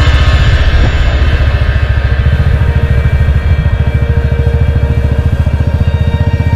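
Motorcycle engine running steadily under way, loud close to the bike, with even, rapid exhaust pulses.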